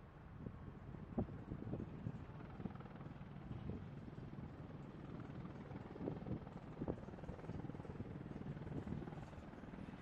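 AH-64 Apache attack helicopter's twin turboshaft engines and main rotor running while it taxis, heard from a distance as a steady low rumble broken by uneven pulses.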